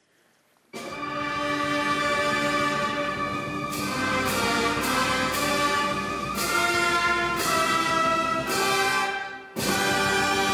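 Military brass band playing held chords, starting about a second in and moving from chord to chord, with a short break near the end before the next phrase begins.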